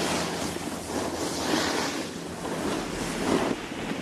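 Snowboard edges scraping and hissing over groomed snow as the rider moves down the slope, rising and falling in swells, with wind rushing over the helmet-mounted microphone.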